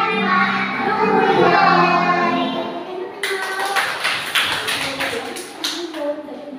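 A song with young children singing along in a group for about three seconds, then the singing stops abruptly and a group claps its hands in a quick, uneven patter.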